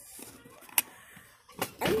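Quiet room with a single sharp click a little under a second in, followed by a voice starting near the end.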